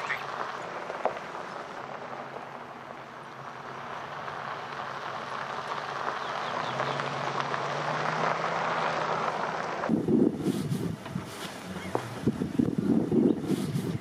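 A steady rushing, wind-like noise that slowly grows louder, then about ten seconds in gives way to gusty wind buffeting the microphone.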